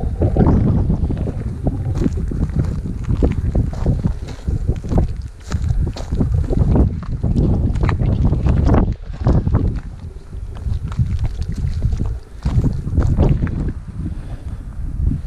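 Wind buffeting the camera microphone in uneven gusts, with scattered knocks and scuffs from handling and footsteps on rock.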